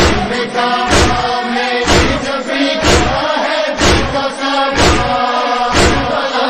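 A chorus of voices chanting a drawn-out noha refrain between the lead reciter's verses. Under it is an even, heavy thump about once a second that keeps time.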